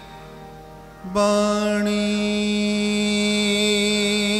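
Crown Flute harmonium sounding a long, steady held note. It comes in sharply about a second in, after a brief quiet lull.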